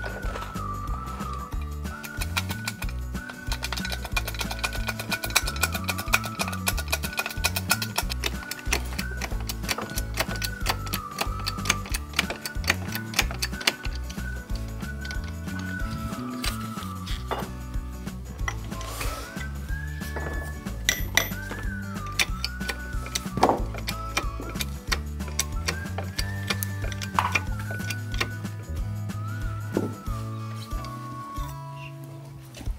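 Background music: a melody over a stepping bass line with a quick, ticking beat.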